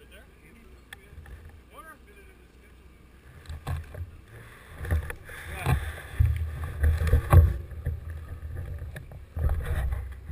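Wind rumbling on a handlebar-mounted action camera's microphone as a bicycle rolls slowly over grass. Knocks and rattles come from the bike, louder and more frequent in the second half.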